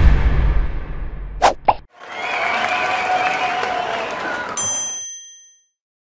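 Title-sequence sound effects: a loud deep boom with a falling whoosh that fades out, two short sharp clicks about a second and a half in, then a held, wavering tone that ends in a bright chime near the end.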